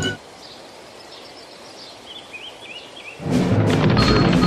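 Quiet outdoor ambience with small-bird chirps, a short run of four or five rising-and-falling chirps about two seconds in. Loud music cuts back in just after three seconds.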